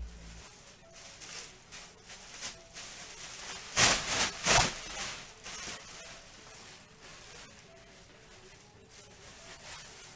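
Foil trading-card pack wrappers rustling and crinkling as packs are handled and opened, loudest in a cluster of bursts about four seconds in.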